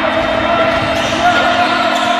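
Live game sound on an indoor basketball court: a basketball being dribbled on the floor, with players' voices calling out.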